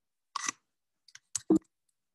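A few short clicks and knocks close to the microphone. The loudest is a dull thump about one and a half seconds in.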